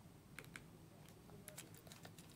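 Near silence: a faint background hum with a few brief, faint clicks.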